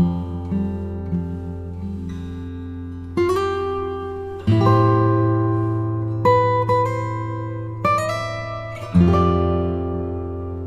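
Background music on acoustic guitar: chords struck one after another and left to ring out, a new one every second or two.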